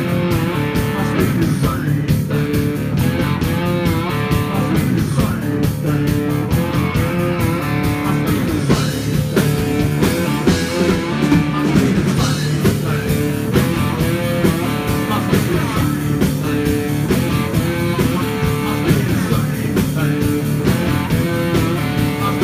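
Live blues-rock band playing: an amplified blues harmonica, played cupped against a vocal mic, wails and bends notes over electric guitar and drums keeping a steady beat.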